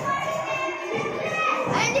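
Background chatter of many children echoing in a large hall, with a steady musical tone underneath. A boy starts to speak near the end.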